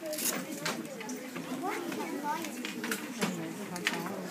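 Chatter of many children and adults talking over one another in a classroom, with scattered short clicks and rustles.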